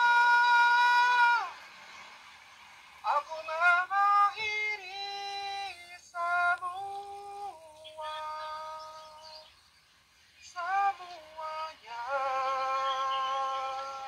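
A voice singing in long held notes that jump in flat steps from pitch to pitch, processed so that it sounds synthetic and robotic. It is played back through a phone's speaker and pauses briefly twice.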